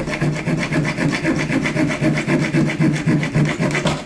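A bare hacksaw blade, held in the hand, sawing through the steel nail that fastens a plastic outlet box to the stud, in quick, even back-and-forth strokes. The sawing stops at the end as the nail is cut through.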